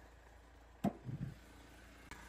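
The hood of a UAZ pickup being unlatched and raised: one sharp click a little under a second in, then a short softer sound as the hood lifts.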